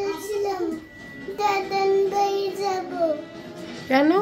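A young boy's voice singing in a drawn-out sing-song, in two phrases of long held notes with a short dip between them about a second in.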